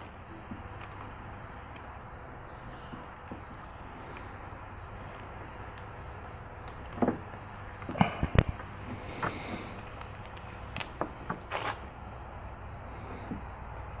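Plastic wiring-harness connector handled and pushed together as a headlight plug is fitted, giving a few sharp clicks and knocks between about seven and twelve seconds in. Under it, a steady faint insect chirping repeats about three times a second.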